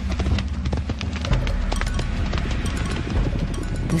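Background music with a galloping-horse sound effect: a rapid patter of many hoof-beats.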